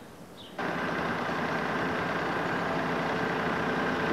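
Heavy metalworking machine tool running and cutting a metal part, a steady mechanical noise with a faint whine that starts suddenly about half a second in.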